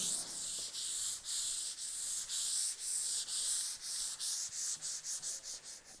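A 320-grit sanding block rubbed back and forth by hand over a dried coat of wiping varnish on a mahogany tabletop. The hissing scrape comes in strokes about two a second, quickening toward the end, and smooths out the bumps and grit between finish coats.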